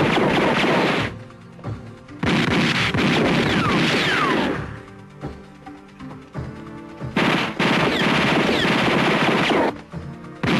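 Film gunfire: three long bursts of rapid automatic fire, each about two seconds, with a few falling whines among the shots, over background music.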